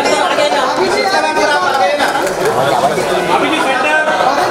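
Overlapping chatter of many voices talking and calling out at once, the crowd of press photographers around a posing couple in a large indoor hall.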